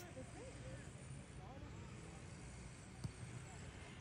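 Faint outdoor ambience: a low steady rumble with distant voices calling out in the first couple of seconds, and a single faint knock about three seconds in.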